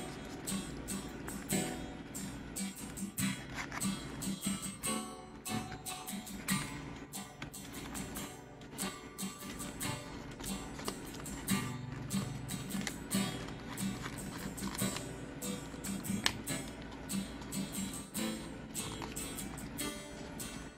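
Background music of acoustic guitar, played in a steady run of plucked and strummed notes.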